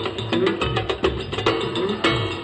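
Live band playing an instrumental passage of a Spanish folk-based song: a drum kit and hand percussion keep a quick, even beat while a melody line runs over them.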